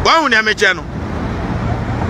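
A short spoken phrase at the start, then a steady low rumble of road traffic.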